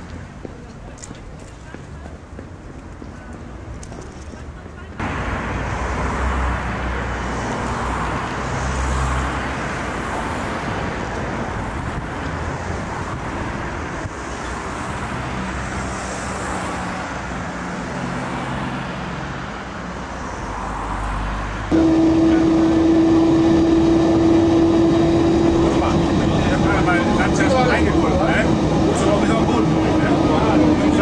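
Street and traffic noise with a low rumble. After a cut about 22 seconds in, the louder sound inside a moving historic tram: a steady whine from its motors and gearing over the running noise, sinking slightly in pitch near the end.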